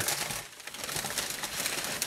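Thin tissue paper rustling and crinkling as it is pulled back and folded inside a cardboard sneaker box. It is a continuous crackle of small crisp clicks that eases briefly about half a second in.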